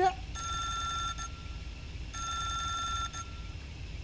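Mobile phone ringtone: an electronic ring made of several steady tones, sounding twice, each burst about a second long with a pause between.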